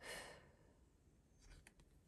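A woman's short sigh, a breath out lasting under half a second, followed by near silence with a few faint clicks near the end as a card is handled.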